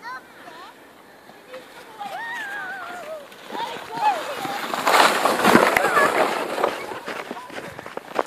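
Plastic sled sliding over snow, a scraping hiss that builds as it comes closer and is loudest about five to six seconds in, then fades. A few high-pitched calls sound before it.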